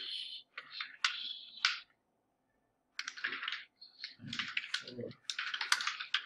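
Typing on a computer keyboard: quick runs of keystrokes, with a pause of about a second near the middle.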